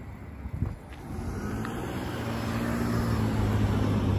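A car's engine and tyres as it drives closer, a steady low hum that starts about a second in and grows gradually louder.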